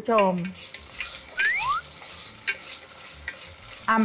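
Green curry paste sizzling in hot oil in a stainless steel saucepan as it is stirred with a wooden spoon, with a few light clicks of the spoon against the pan.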